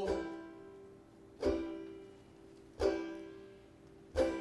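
Banjo strummed three times, about a second and a half apart, each chord left to ring and fade.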